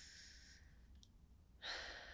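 A quiet pause with a person's soft breathing close to the microphone, then a louder breath about one and a half seconds in that fades away.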